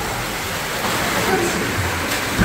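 Steady rush of water running through an indoor water slide, with faint voices underneath.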